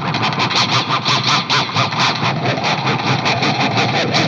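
Electric guitar through heavy distortion playing a fast run of rapid, evenly repeated picked notes.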